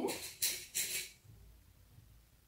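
Silk satin fabric rustling in three short swishes within the first second as it is handled and pinned.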